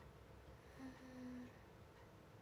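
Near silence, broken about a second in by a brief, faint closed-mouth hum ("mm") from a woman's voice, lasting about half a second.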